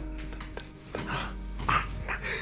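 Background music with a held note, broken by a dog's short barks about a second in and again near the end.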